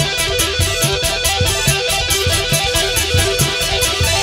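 Live dangdut band playing an instrumental passage: electric guitar picking a fast run of short notes over drums and a steady cymbal beat.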